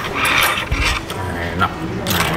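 Close-up chewing and mouth sounds from a man eating, with a dull knock just before the one-second mark.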